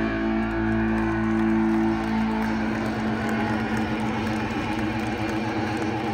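Live rock band's final held chord, electric guitar and bass ringing out over a stadium PA, fading after about two seconds into a large crowd cheering.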